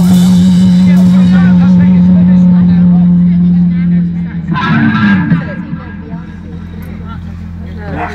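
Live rock band's amplified guitar, bass and drums holding a loud sustained note that stops about four seconds in. A short bending pitched sound follows, then quieter stage sound with a steady amplifier hum.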